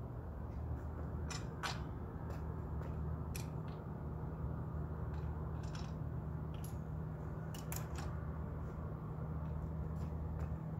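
Irregular small clicks and taps of metal fittings as a telescope is being bolted onto its tripod mount, over a steady low hum.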